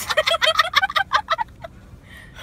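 A woman's burst of rapid, high-pitched laughter: a fast run of short staccato pulses, about ten a second, that trails off a second and a half in.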